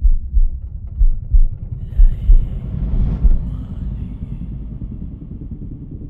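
Logo-sting sound effect: deep bass thumps in pairs, about once a second, over a low rumble, with a faint whooshing glide about two seconds in; the thumps stop after about three and a half seconds and the rumble fades.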